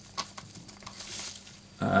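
Handling noise as a soil sensor is pressed into a potted plant: a few small clicks and light rustling of leaves and gloves.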